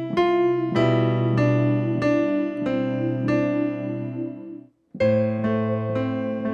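Electronic keyboard with a piano voice playing slowly: a held left-hand chord under a right-hand melody of single notes, about one note every 0.6 s. Shortly before the end the sound cuts off abruptly for a moment, then comes back with a new chord.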